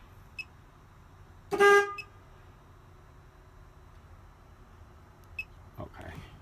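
A single short vehicle-horn honk, about a second and a half in, lasting under half a second. A couple of faint brief blips are heard before and after it.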